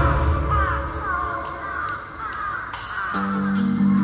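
Live alternative-metal band music in a breakdown. After a hit at the start, the heavy band drops out and short falling high-pitched cries repeat about three times a second. About three seconds in, a clean plucked guitar riff comes in over fast cymbal ticks.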